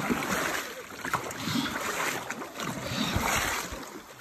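A paddle blade dug into river water stroke after stroke, each stroke a splashing rush of water, about one a second.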